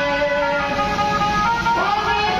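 Loud music with held notes and a rising pitch slide near the end.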